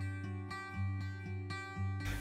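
Background music of strummed guitar chords, a new strum about every half second.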